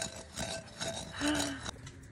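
Stone pestle grinding indigo dye stone against the grooved inside of a clay bowl: a run of irregular gritty scrapes and knocks of stone on ceramic.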